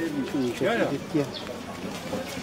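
People's voices talking in short phrases, unclear and in the background.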